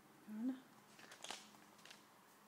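A woman's short, faint murmur with a rising pitch, then a few soft clicks.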